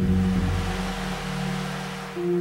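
Low sustained notes from marimba and mallet percussion, held and fading gradually.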